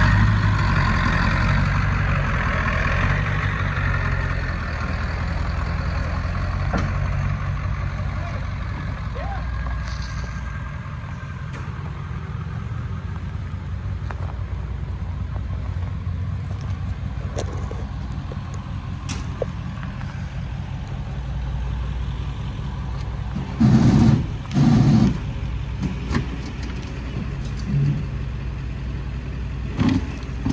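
Flatbed tow truck's engine running, louder in the first few seconds as a rear wheel spins on loose gravel, then settling to a steady idle. Two short, loud bursts come about three-quarters of the way through.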